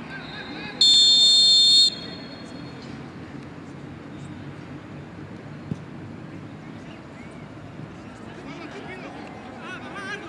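A referee's whistle sounds one long, steady, shrill blast of about a second near the start. After it comes a faint background of distant players' voices.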